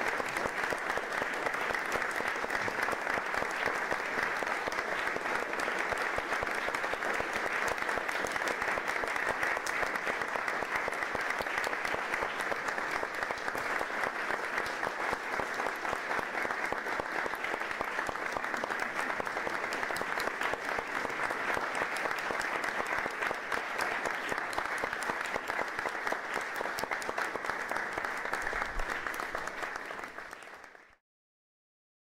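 Audience applauding, a dense and steady patter of many hands clapping, which fades out right at the end.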